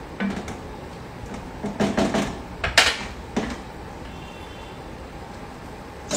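A handful of scattered sharp clinks and knocks of a spoon against steel cooking pans while stirring on the stove, the loudest about three seconds in, over a steady low kitchen background.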